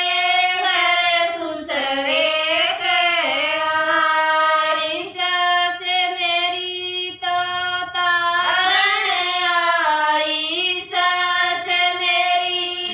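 Women singing a Haryanvi folk song together, in drawn-out phrases with brief breaks between lines.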